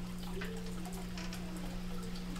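Room tone: a steady low hum, with a few faint ticks.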